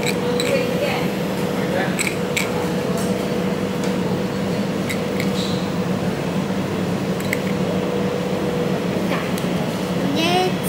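Busy room ambience: a steady electrical machine hum under a murmur of background voices, with a few light clicks and clinks scattered throughout.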